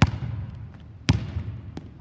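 A basketball bounced twice on a hardwood gym floor, about a second apart, each bounce echoing in the large hall; a fainter tap follows near the end.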